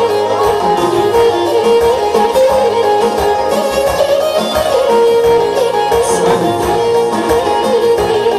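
Live instrumental folk dance music: an ornamented lead melody with quick, wavering runs over a steady beat.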